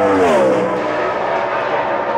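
NASCAR Sprint Cup car's V8 engine at full throttle on a qualifying lap, passing close by. Its pitch drops over the first second as it goes past, then the sound settles lower and fades.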